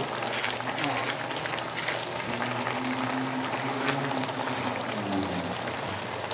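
Sarciado sauce of tomato, onion and egg simmering and sizzling in a nonstick wok around fried tilapia, with a steady crackle as a spatula stirs it.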